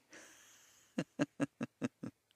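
A person exhales in a breathy sigh, then laughs softly in five short, quick pulses.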